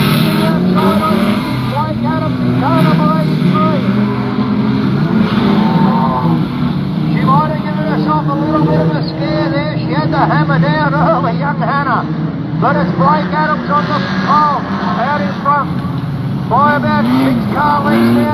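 Several speedway junior sedans racing on a dirt oval, their engines running steadily with repeated rises and falls in pitch as the drivers come on and off the throttle through the turns.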